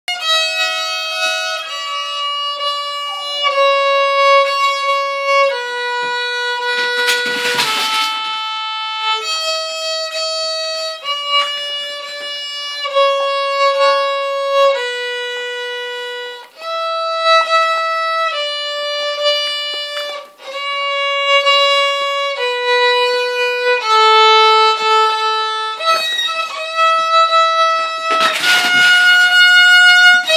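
Two violins playing a slow tune together in long held notes. Two brief rushing noises cut across the music, about seven seconds in and near the end.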